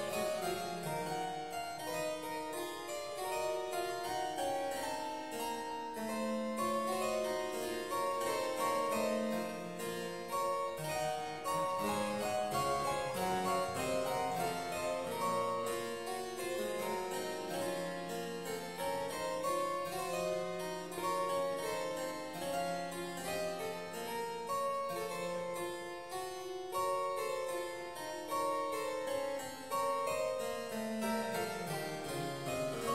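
Solo harpsichord by the maker Walter Chinaglia, played as a continuous piece: a moving upper line over lower notes, some of the bass notes held for several seconds.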